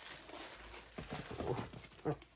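The loose plastic sleeve on a roll of gift-wrap paper crinkles as the roll is lifted and handled. About a second in there are a few soft knocks.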